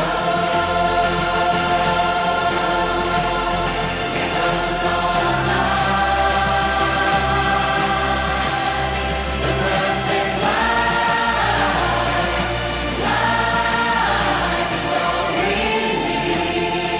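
Music with choral singing: long held voices over sustained chords, with two phrases that rise and fall about ten and thirteen seconds in.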